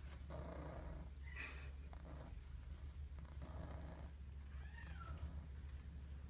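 Domestic tabby cat purring steadily while being stroked, a low continuous rumble that swells in waves, with a brief high chirp about five seconds in.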